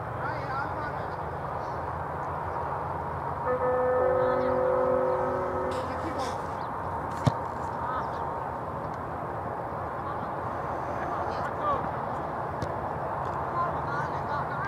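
Outdoor football pitch ambience: steady open-air noise with faint distant shouts from the players. A held, steady multi-tone sound, horn-like, comes in about three and a half seconds in and lasts about two seconds, and a single sharp knock sounds about halfway through.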